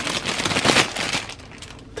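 Thin plastic produce bag crinkling as it is picked up and handled, a dense run of rapid crackles for about the first second, then quieter.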